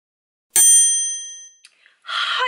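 A single bright bell ding, struck once and ringing out for about a second as it fades, followed by a faint short click: a subscribe-animation sound effect.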